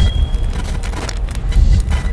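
Deep rumbling bass from an edited intro soundtrack, swelling in pulses, with a short high ringing tone fading out in the first half second.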